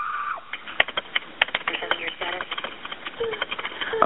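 Quick, irregular clicks of a keyboard being typed on, heard over the narrow-band line of a recorded 911 call, with a few brief voice sounds between them.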